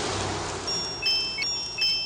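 A swelling hiss that fades away over the first second, then high, clear chime notes struck a few at a time, each ringing on, like the start of an intro sound-bed.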